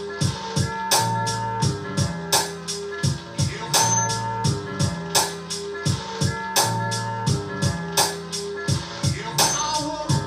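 Hip-hop beat playing back from an Akai MPC: a slowed, chopped sample with held organ-like chords that change about every second, over a steady drum pattern.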